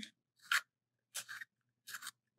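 Blackwing Two-Step Long Point Sharpener's second-stage blade scraping the point of a turned pencil: three short, quiet rasping strokes about two-thirds of a second apart. The second stage shapes the graphite point after the first stage has cut the wood.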